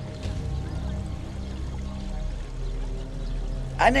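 Background drama score of low, held notes. A man's voice begins right at the end.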